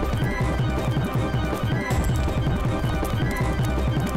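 Tense drama background score driven by a fast, galloping low drum rhythm.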